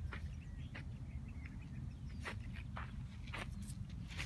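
Footsteps crunching on a sandy dirt trail, a few scattered steps, over a steady low rumble.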